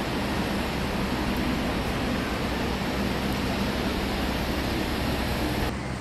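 Steady city street noise picked up by a phone's microphone while walking: an even rush with a low, constant hum underneath. The texture shifts slightly just before the end.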